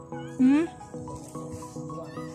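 Background music of short repeated notes, with a woman's brief rising 'mm' about half a second in, the loudest sound.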